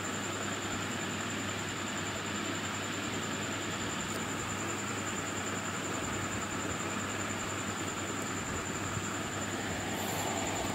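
Steady background noise in a pause between spoken lines: an even hiss with a constant faint high-pitched whine, unchanging throughout.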